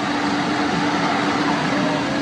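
Idling car engine, a steady low hum with no change in pitch.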